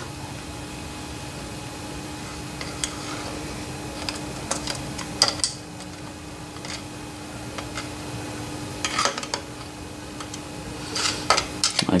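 Steel screwdriver tip poking and scraping inside a metal shaper gearbox housing, giving scattered light metallic clicks and scrapes over a steady low hum.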